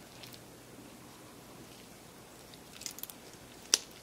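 Faint handling clicks as a small notched metal plate is fitted by hand onto a Canon 60D's mode selector dial. A few soft ticks come about three seconds in, then one sharper click just before the end.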